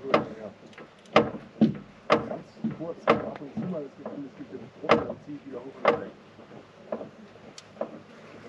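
Irregular sharp clicks and knocks, roughly once a second, from hands working a bottle rigged to push fluid into the van's failing clutch hydraulic line, with some quiet talk.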